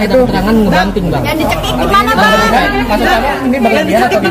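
People talking, several voices at once.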